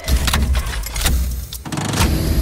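Assault Fitness air bike's fan whooshing in surges as the rider pedals and drives the handles hard, with a brief dip near the end.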